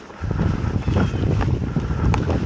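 Wind buffeting the microphone of a handlebar camera on a mountain bike riding a dirt forest trail, a low rumble that swells about a quarter second in, with a few knocks and rattles from the bike over the bumpy ground.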